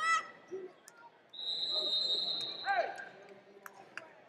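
A wrestling referee's whistle blown once in a steady, high-pitched blast of about a second and a half, stopping the action. Shouting voices come just before and right after it.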